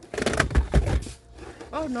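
Rustling and bumping of VHS tape cases being handled, with low thuds, lasting about a second. A woman says a brief 'Oh' near the end.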